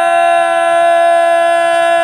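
A man's voice holding one long sung note at a steady pitch, with a slight waver, in the drawn-out chanting delivery of a majlis sermon.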